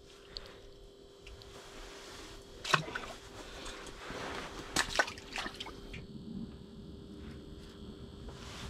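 Water in an ice-fishing hole sloshing and splashing as a panfish is let go back into it, with two sharp knocks about five seconds in.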